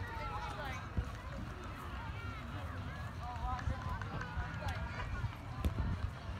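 Several high-pitched voices of children at play, calling and chattering over one another at a distance, over a steady low rumble, with a sharp knock about a second in and another near the end.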